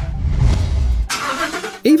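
A car engine's deep rumble for about a second, followed by a short burst of hiss.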